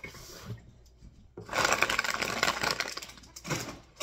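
Plastic snack bags of pretzel bites crinkling and crackling loudly as they are picked up and handled, for about two seconds in the middle.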